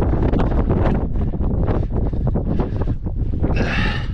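Wind buffeting the camera microphone on an exposed rocky ridge: a loud, constant low rumble with gusty crackle, and a brief brighter hiss near the end.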